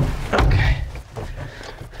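A sharp knock and then a heavy thud about half a second in as someone climbs into the cab of a lifted, mud-covered Jeep truck and swings the driver's door shut.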